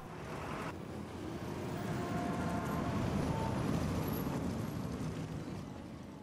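Harley-Davidson motorcycles' V-twin engines running as the bikes ride past, the sound building to a peak midway and then fading away.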